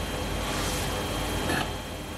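Steady room background: an even hiss over a low hum, with no distinct event.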